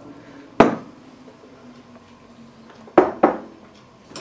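Metal cookware clanks: one sharp knock with a short ring about half a second in, then two more close together near the end, as of a steel wok, its lid or spatula, and dishes being handled at the stove.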